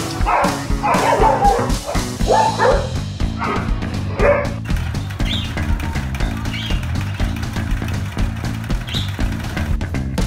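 Dogs barking and yipping excitedly several times in the first half, over background music.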